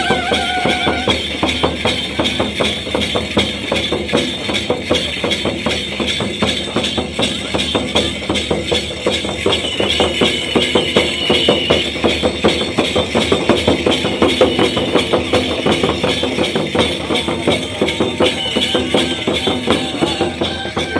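Live Santhal folk dance music: drums beaten in a fast, steady rhythm with jingling metal percussion, and a brief held high note about ten seconds in.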